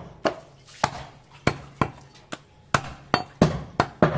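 A butcher's cleaver chopping goat meat on a wooden log chopping block: about ten sharp strikes at an uneven pace, two of them in quick succession about three seconds in.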